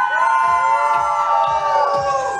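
Live pop band music between sung lines: long held melody notes that slide slowly in pitch, with little bass or drum underneath.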